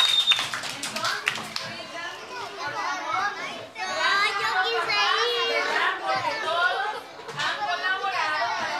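Chatter of a group of young children talking and calling out over one another, with short lulls just before the four-second mark and again about seven seconds in.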